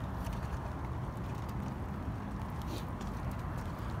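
Footsteps on pavement, faint and irregular, over a steady low outdoor rumble.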